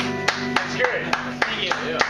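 The last held electronic keyboard chord fading out, as a few people clap in scattered single claps, with voices in the room.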